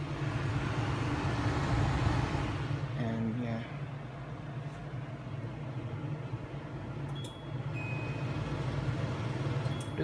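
Electric kitchen range hood running, its fan giving a steady hum and rush of air. The air noise drops a few seconds in, and short electronic beeps from its touch controls come near the end as the fan is set to low speed.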